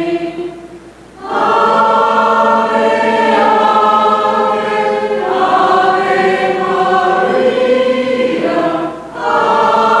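A group of voices singing a hymn together in long, held phrases, the closing hymn after the final blessing. The singing pauses briefly about a second in and again near nine seconds, as if for a breath between lines.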